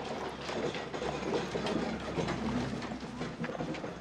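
Horse-drawn wooden cart rolling along a paved street, with a steady clatter of hooves and wheels made up of many small knocks.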